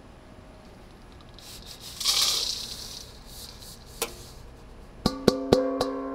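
Dry soil sample poured from a stainless steel bowl, with a rushing, rattling hiss that peaks about two seconds in. Near the end, the steel bowl is knocked three times in quick succession with sharp clangs, and it keeps ringing with a steady tone.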